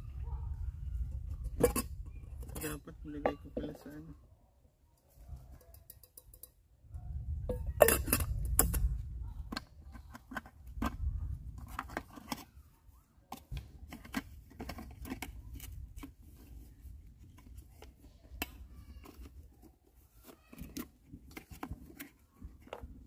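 Metal camping cookware clinking and knocking as a small kettle and nesting pots are handled and packed away, in scattered short knocks with a busy clatter about eight seconds in. A low rumble comes and goes underneath.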